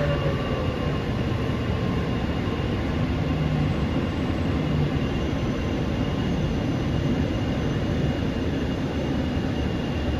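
Mumbai Metro MRS-1 train, with BEML-built cars and Hitachi SiC inverters driving permanent-magnet motors, heard from inside the car while running: a steady low rumble of wheels on rail with a thin, constant high whine over it.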